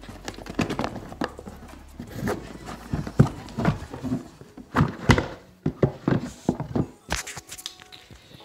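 Irregular knocks, thumps and scraping of a cardboard board-game box being worked open by hand; the lid is a tight fit and hard to get off.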